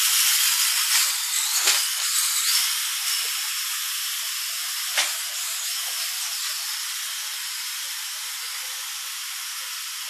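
Small wheeled robot's geared hub motors whirring and its wheels rattling on a wooden floor, slowly fading as it drives away, with a few knocks early on and one sharp click about five seconds in.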